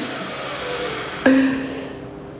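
A man's long breathy exhale, then a steady hummed 'mmm' starting about a second in and fading out.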